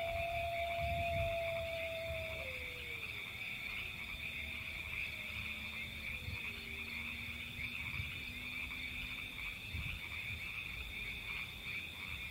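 Night chorus of frogs: a steady, high-pitched trilling. Near the start a long, drawn-out wailing call is held on one pitch and then glides down, and a fainter falling call follows a few seconds later.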